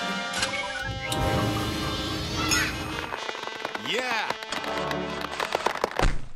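Dubbed cartoon sound effects over children's background music: an electric crackle effect near the start, pitch-gliding effects in the middle, and a fast run of sharp clicks near the end.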